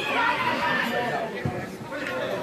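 Several voices talking and calling out over one another: spectator chatter at a football match.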